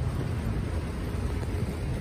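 Steady low rumble of outdoor city street background noise, with no distinct event standing out.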